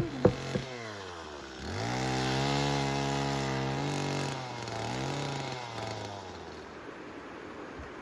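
Two-stroke chainsaw revving up about two seconds in and held at high revs while cutting through a firewood log. It eases off briefly past the four-second mark, revs again, then drops back toward idle near the end. A couple of sharp knife chops on a wooden board come right at the start.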